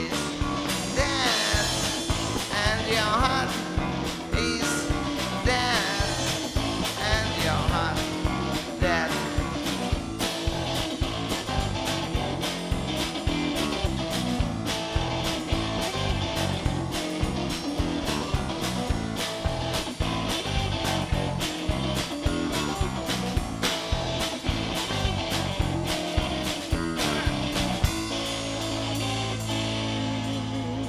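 Live rock band playing: electric guitar, bass guitar and drum kit together at a steady driving beat, the guitar bending notes in the first several seconds. Near the end the drums stop and a low chord rings on.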